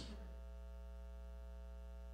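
Faint, steady electrical mains hum: a low buzz with a ladder of even overtones that holds level throughout.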